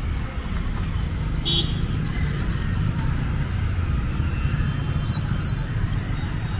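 Motorcycle and car engines running and pulling away in a crowd across the level crossing as the barrier lifts, with a steady low rumble throughout. A brief sharp high sound comes about a second and a half in.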